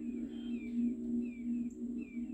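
Soft ambient background music: a steady low drone of held tones, with short, high, falling chirps recurring about twice a second.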